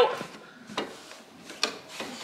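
A sponge rubbing inside a washing machine's drain-filter housing, with two light knocks less than a second apart.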